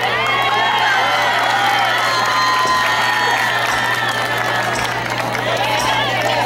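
Crowd cheering and shouting, many voices overlapping throughout, over a steady low hum.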